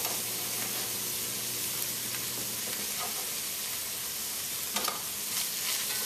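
Steady sizzle of shredded cabbage and smoked herring frying in olive oil in a wide stainless steel pan, with a few light spoon scrapes against the pan in the second half as the stirring begins.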